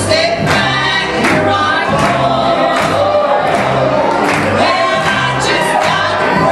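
Live gospel singing: women's voices singing a song together to piano accompaniment, over a steady bass and beat.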